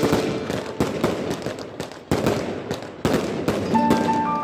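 Aerial fireworks going off: a dense crackle of bursting stars with sharp bangs roughly a second apart, three of them in a row.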